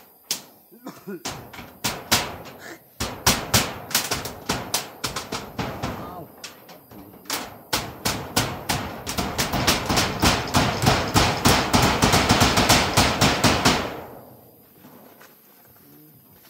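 A hammer nailing corrugated metal roofing sheets onto a hut frame. Scattered blows build to a fast, steady run of strikes, several a second, then stop near the end.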